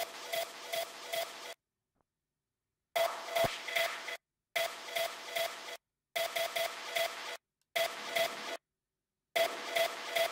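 Short snippets of a hardstyle drop played back over studio speakers, each a little over a second long with about four accented beats, starting and stopping over and over with silent gaps between, as it is auditioned during EQ adjustments.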